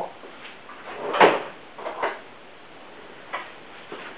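A few short knocks and rustles of objects being picked up and handled, the loudest about a second in, a softer one near two seconds and a faint one near the end.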